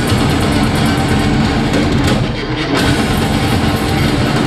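A speed metal band playing live: distorted electric guitar over fast, driving drum kit, loud and dense throughout.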